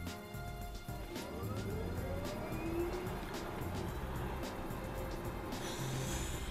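Background music with a steady beat over the whine of the Tesla Model S P85D's electric drive motors, rising steeply in pitch from about a second in as the car accelerates hard.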